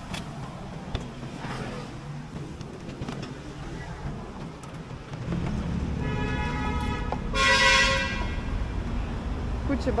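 Road traffic, with a vehicle engine rumbling up about five seconds in and then a horn sounding for about two seconds, loudest in its final second.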